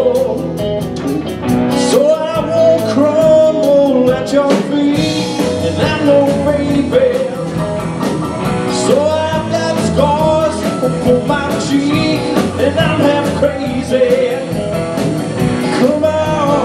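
Live blues-rock band playing: guitars, keyboard, bass and drums, with a bending melodic lead line over a steady beat.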